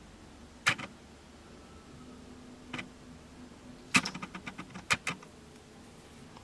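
A few short, sharp clicks and taps against quiet room tone: one at under a second, one near three seconds, and a quick cluster about four to five seconds in.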